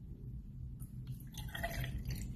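Milk pouring from a plastic jug into an empty metal cocktail shaker tin. The faint trickle of the stream hitting the tin starts about a second in.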